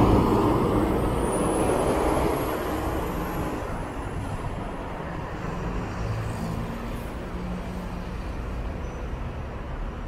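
A city bus pulling away, its engine and road noise fading over the first few seconds, then a steadier, quieter traffic rumble with another bus engine running.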